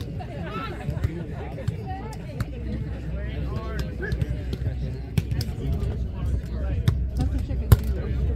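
A volleyball being struck by players' hands: several sharp slaps spread through the rally, the loudest near the end, over background chatter of many people.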